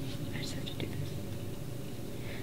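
A woman's brief, breathy sniffles and shaky breaths as she holds back tears at a microphone, over a steady low hum.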